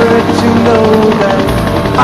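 Helicopter rotor chop over music with held keyboard-like notes.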